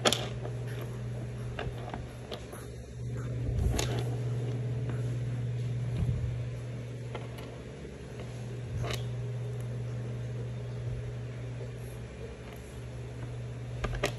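A steady low mechanical hum runs throughout, with a handful of scattered sharp knocks and light rustles from handling while crocheting with a hook and yarn.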